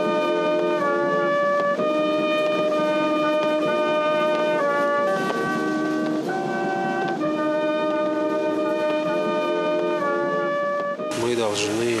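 Brass band playing a slow piece of long held notes, the chord changing about once a second. It cuts off near the end, where a man's voice starts.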